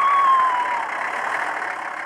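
An engine running steadily, with a faint tone sliding slowly down in the first second.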